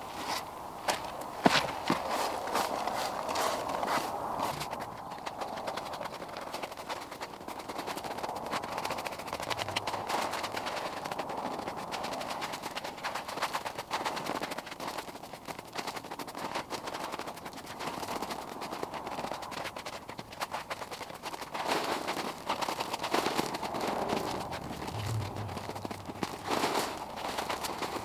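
Stiff hand brush sweeping dry dirt and grit across a rubber pond liner: steady scratchy brushing broken by many short scrapes and knocks.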